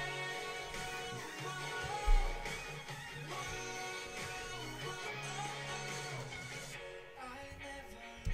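A K-pop boy group song playing: sung vocals over guitar and a beat.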